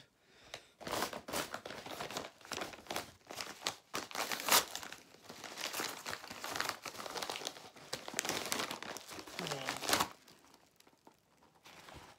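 White plastic mailing bag being torn open by hand and crumpled: a dense crinkling and rustling, loudest about halfway, that dies down about ten seconds in.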